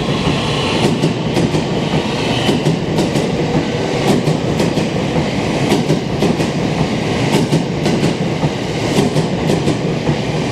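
JR West 225 series 100-subseries electric train departing and running past close by, its wheels clicking over the rail joints car after car over a steady rumble of running noise.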